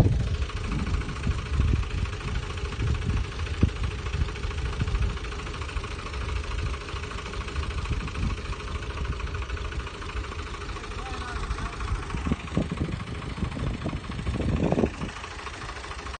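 Diesel tractor engine running steadily under load as it pulls a ridging implement through tilled soil to build a field bund.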